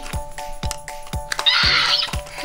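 A short raspy electronic screech from a Mattel Jurassic World Blue interactive velociraptor toy near the end, over background music with a steady beat.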